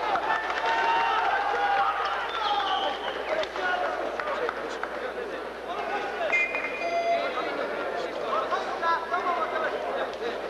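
Arena crowd: many overlapping voices shouting and calling at once, with no single clear talker.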